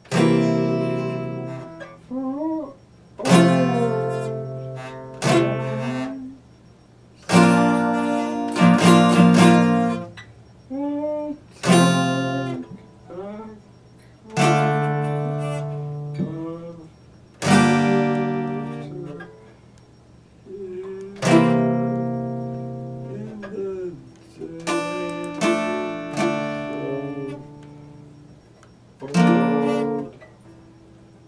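Epiphone acoustic guitar: chords strummed one at a time at an unhurried, irregular pace, each left to ring out and fade before the next.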